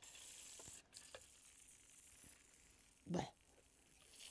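Faint hiss of gas escaping as a tin of surströmming (fermented herring) is pierced with a hand can opener, with a few small ticks from the opener. A short disgusted 'bäh' comes near the end.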